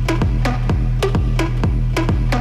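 Electronic groove played live on the pads of a Native Instruments Maschine, triggering samples from the original recording of a song. A sustained low bass runs under short, sharp hits about three times a second, each with a brief falling tone.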